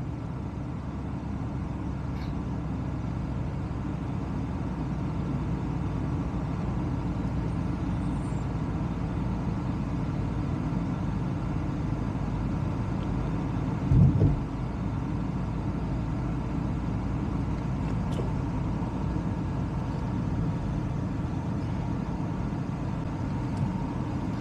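Steady road and engine noise of a car driving along a city road, with a brief low thump about fourteen seconds in.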